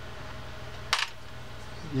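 A single short, sharp click about a second in as the fishing reel's loosened side case is handled, over a faint steady hum.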